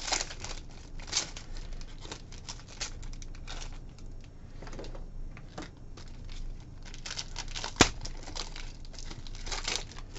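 Plastic packaging crinkling and rustling as it is handled, in a run of short crackles, with one sharp click a little before the end.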